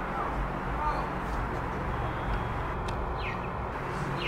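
Steady low rumble of distant traffic, with a couple of short, high, falling chirps from a small bird about three seconds in.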